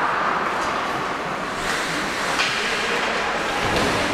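Steady, even din of an ice hockey game in an indoor rink, with a few sharp knocks through it, about three in all.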